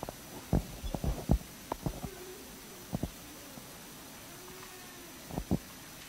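A scatter of dull, low thumps and knocks at irregular intervals, bunched about half a second to a second and a half in and again near the end.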